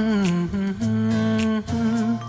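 Background Hindi song: a wordless hummed vocal melody of held notes, sliding down near the start, over soft accompaniment.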